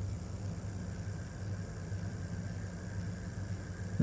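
A steady low hum with a faint hiss.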